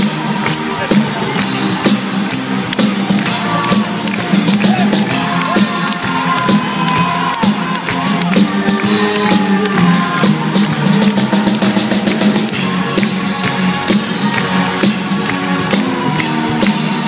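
A live band plays loudly and continuously: electric guitars and a drum kit with cello and violins, the drums hitting steadily throughout.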